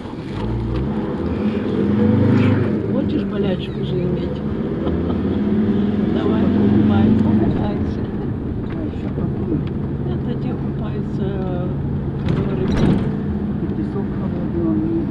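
Bus engine running as the bus drives along, heard from inside the passenger cabin, its note shifting a few times. Indistinct voices run beneath it.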